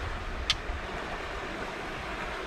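Steady rush of wind on the microphone and canal water, with one short, sharp click about half a second in.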